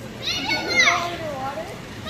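Children's voices: one high, drawn-out call in the first second, then lower, fainter voices.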